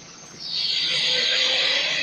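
Interior noise of a Scania L94UB single-decker bus: quiet for about half a second, then a loud, steady hiss comes in suddenly and holds.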